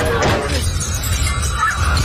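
Movie car-crash sound effects: glass shattering and debris as the car is struck, over a low music score. A steady high tone comes in about halfway through.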